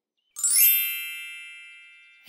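Bright chime sound effect: a quick upward shimmer about half a second in, then several high ringing tones that fade away slowly over about a second and a half.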